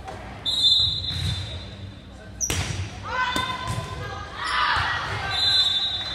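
Volleyball rally in a gymnasium: a sharp ball hit about two and a half seconds in, sneakers squeaking on the hardwood court, and players' and spectators' voices.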